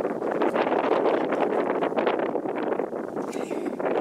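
Wind buffeting the microphone: a loud, steady rushing noise with a gusty flutter.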